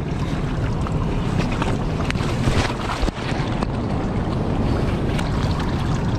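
Fast, shallow river water rushing and splashing close to the microphone around a steelhead held in the current, with a few small clicks and knocks from handling.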